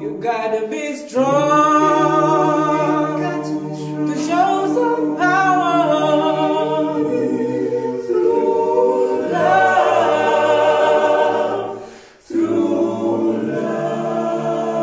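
Male a cappella vocal group singing in close harmony, the group holding chords under a lead voice. The singing stops for a moment near the end, then comes back in.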